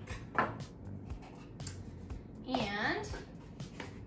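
Small clicks and taps of measuring spoons and a plastic container being handled and capped on a table, with a short stretch of a woman's voice a little past halfway.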